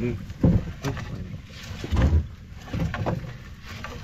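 Gill net being hauled by hand over the side of a small wooden outrigger boat, with two loud low thumps about half a second and two seconds in and a few lighter knocks after.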